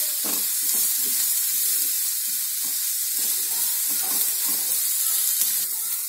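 Strips of bottle gourd peel and bitter gourd sizzling as they fry in oil in a pan, with a steady hiss. A wooden spatula stirs and scrapes through them in quick repeated strokes, a few each second.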